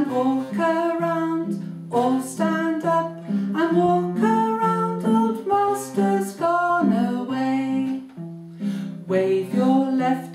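A woman singing a children's action song while strumming a nylon-string classical guitar.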